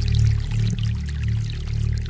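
Computer-generated downtempo future garage music (Mubert) with a deep bass line whose notes change every half second or so, under a fine crackly noise texture.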